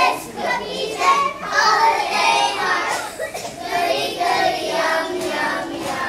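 A group of young children singing together.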